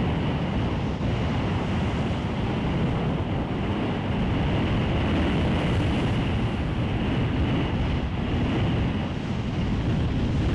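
Steady, low rushing noise of wind and surf, unbroken throughout.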